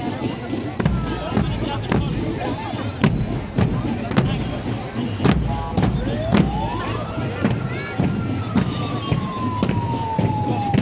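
Marching-band bass drums beating, about two strokes a second, over crowd chatter. About six seconds in, a siren-like tone rises, holds briefly, then slowly falls.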